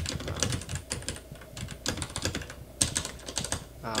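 Typing on a computer keyboard: an uneven run of key clicks, several a second.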